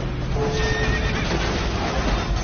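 A horse whinnying, a sound effect laid over the programme's title music.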